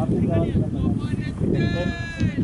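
Players calling out across a cricket field: a short shout about half a second in, then one long, drawn-out high call near the end.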